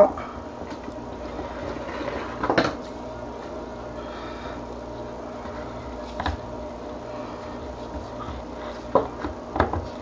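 Spatula stirring thickening cold process soap batter in a plastic pitcher, with a few short knocks against the pitcher's sides, over a steady low hum.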